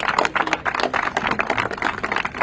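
Applause from a small crowd: many separate hand claps at an uneven rate.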